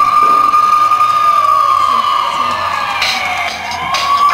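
A loud siren-like wail opening the color guard's show music: a single tone that holds, sinks slowly over about three seconds and climbs back, with a sharp hit about three seconds in.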